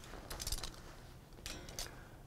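Faint handling noise: two short bursts of light clicking and rustling, about half a second in and again near the end, as a pair of shorts on a clear plastic hanger is moved and set down.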